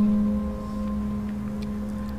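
Background music: a held low tone with fainter higher tones above it, like a singing bowl, easing down a little in the first half second and then sustained evenly.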